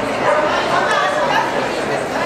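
Dog barking over the steady chatter of many people in a large indoor hall.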